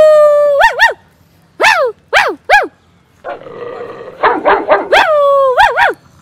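Small dog barking aggressively: long yelping barks that fall in pitch, with short sharp barks between them and a stretch of rough growling about three seconds in.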